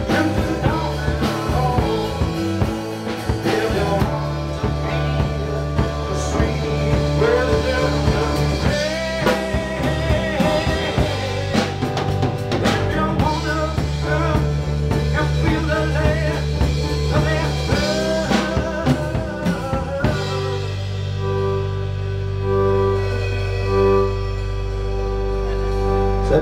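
Live rock band playing, with drum kit and electric and acoustic guitars. About twenty seconds in the drum hits stop and a held chord rings on.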